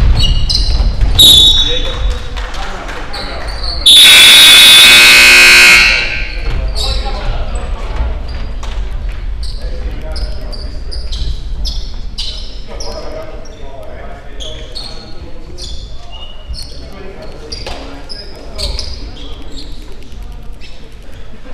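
Gym scoreboard horn sounding once for about two seconds, a loud steady buzz that cuts off sharply, signalling a stoppage in play. Before it a basketball bounces on the hardwood floor; after it come voices and scattered ball bounces in the big hall.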